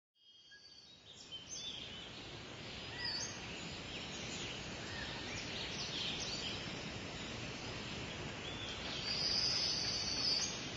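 Birds chirping and calling over a steady hiss of background noise, fading in over the first second or two.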